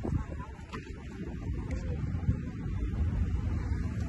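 Wind on a phone microphone outdoors: an uneven low rumble with no clear event in it.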